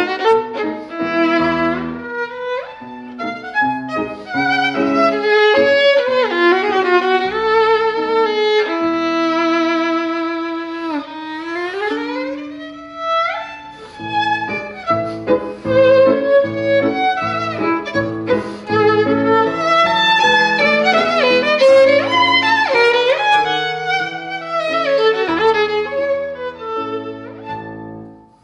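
Solo violin playing fast virtuoso passagework with piano accompaniment. About ten seconds in, the violin holds a long note with vibrato, then sweeps upward in a rapid rising run before the fast figures resume over piano chords.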